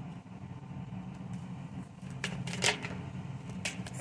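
Tarot cards being handled: a few light clicks and brushes of card on card as one is drawn from the deck, the sharpest in the second half, over a steady low hum.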